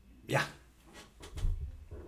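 A dog gives one short bark about a third of a second in. Low thumps and clicks of handling follow a little after halfway.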